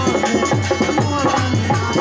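Baithak Gana ensemble music: a dholak drives the rhythm with low strokes on its bass head, about four a second, each sliding down in pitch. Harmonium tones and other hand percussion play over it.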